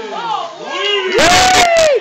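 A few people shouting and cheering excitedly, with one long, very loud held shout in the second half.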